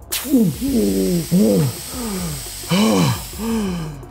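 A sudden burst of hiss, then a man's voice making a run of wordless, strained groans and gasps, each sliding up and then down in pitch.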